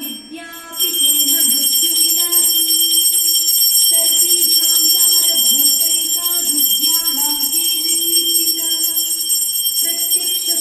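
Devotional music with a bell ringing continuously over it. The bell starts about a second in and is the loudest sound from then on.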